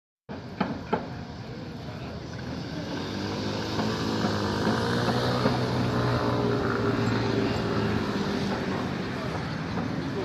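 An engine's steady low hum rising in loudness from about three seconds in, holding, then easing slightly near the end, over outdoor background noise, with a couple of light knocks in the first second.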